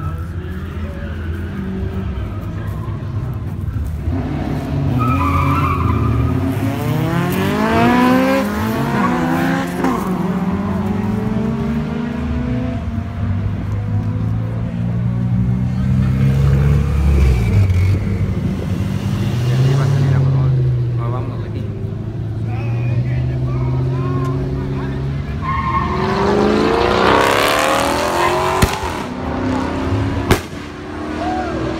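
Car engines running loudly, with two hard accelerations in which an engine note climbs steeply: one about a quarter of the way in and another near the end. The second comes with a loud rushing, hissing noise.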